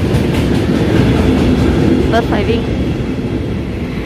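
A train running along the track: a loud, steady rumble.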